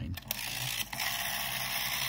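Rotary dial of a 1960s GPO telephone pulled round to 9 and spinning back, a steady rasping whirr from the dial mechanism that stops near the end.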